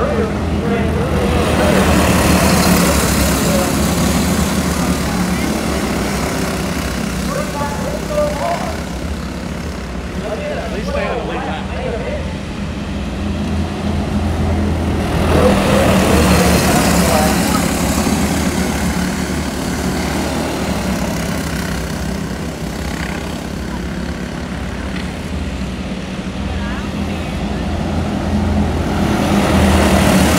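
A pack of small race cars lapping a dirt oval, their engines running steadily. The sound swells in loudness each time the pack comes by, about every 14 seconds.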